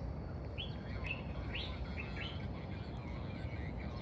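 Birds chirping, about four short sweeping chirps in the first half, over a steady low rumble of outdoor background noise.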